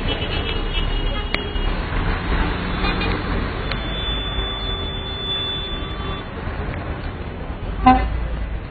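Low traffic rumble, with a car horn held for about two and a half seconds near the middle and shorter horn tones near the start.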